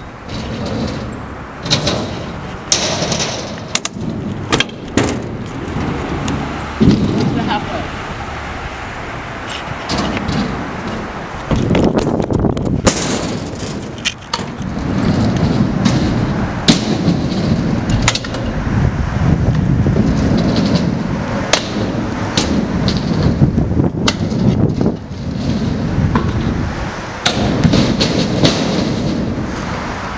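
Stunt scooter riding on concrete ramps: the wheels rumble in rolling stretches, broken by many sharp clacks and thuds of landings and of the deck and bars hitting the concrete.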